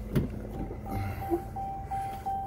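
A door latch clicks open, and then a 2014 Ram 2500's door-open warning chime starts: one steady pitched tone, repeating about three times a second.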